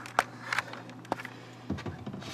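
A few short, sharp clicks and taps from handling at a glass-fronted snake enclosure, with metal feeding tongs and the sliding glass door's track close by. The loudest is about a quarter second in. Under them runs a low steady hum that stops near the end.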